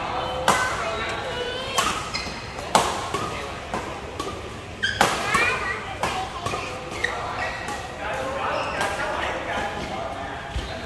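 Badminton rackets striking a shuttlecock during a rally: sharp cracks a second or more apart, the loudest four in the first half, ringing in a large hall.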